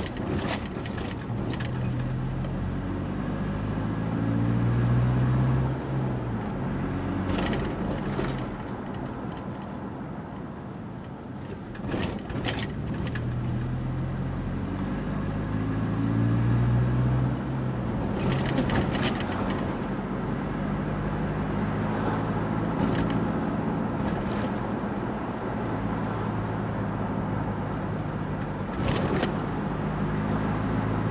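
A car's engine and road noise heard from inside the cabin while driving. The engine's pitch rises twice as the car accelerates, with a few brief knocks scattered through.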